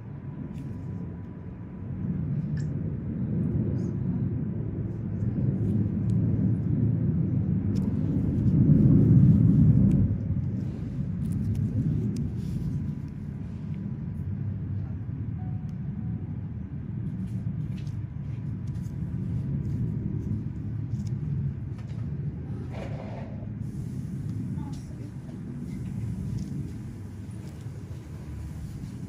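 Low, muffled rumble with indistinct voices in the background, loudest about nine seconds in.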